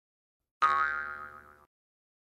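A single intro sound effect: a sudden ringing, pitched tone that fades over about a second and then cuts off.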